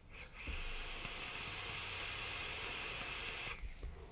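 Steady hiss of a long draw on a Medusa rebuildable tank atomiser fired on an Asmodus Minikin V2 dual-18650 mod, air pulled through the atomiser's airflow over the firing coil, lasting about three seconds and stopping abruptly.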